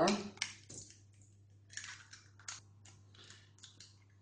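Eggshells being cracked and broken apart by hand over a stainless steel mixing bowl: a run of short, sharp crackles in the second half.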